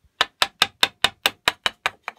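A bevel-edge chisel driven through pine with a quick run of nine light, even taps, about five a second, paring away the waste of a bridle joint from the side.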